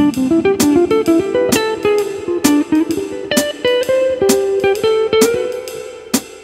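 Electric guitar playing a fast single-note jazz line over a ii-V-I in C (Dm7–G7–Cmaj7), mostly in triplets, ending on a held note. A metronome click sounds about once every second under it.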